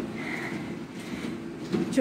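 Treadmill running with a steady low rumble from its motor and belt.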